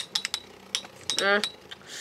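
Two metal-wheeled Beyblade spinning tops, Hell Beelzebub and Thief Phoenix, clashing in a plastic stadium: irregular sharp metallic clicks as they knock together, several a second.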